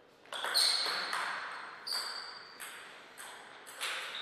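Table tennis rally: a celluloid-type ball hitting the table and the players' rubber-faced bats, about seven sharp ticks spaced roughly half a second to a second apart, some with a short high ping, echoing in a large hall.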